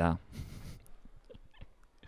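A man drinking close to the microphone: a brief sip about half a second in, then a few soft clicks of swallowing.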